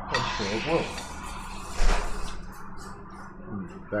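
Voices laughing briefly at a table, with a sharp knock about two seconds in and another short laugh at the end, over a steady low hum.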